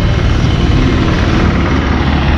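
Motorcycle engine idling: a loud, steady low rumble with a fine, even pulse.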